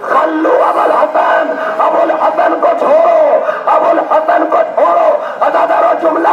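Loud, emotional wailing lament: the orator's voice raised in a crying, sung delivery over a mourning congregation weeping and crying out. This is the masaib, the lamentation that closes a Shia majlis.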